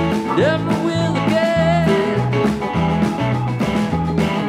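Live rock band playing an instrumental break: bass and drums keep a steady shuffle while a lead electric guitar slides up about half a second in and holds a wavering note.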